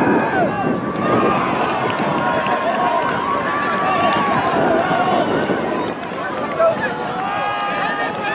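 Many overlapping voices of ultimate frisbee players and sideline teammates shouting and calling out across an open field, none of it clear speech, with one brief louder shout near the end.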